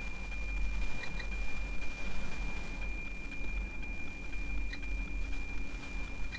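NOAA 18 weather satellite's APT image signal, demodulated in narrow FM on a software-defined radio: a steady high tone with a regular tick-tock beat over faint static.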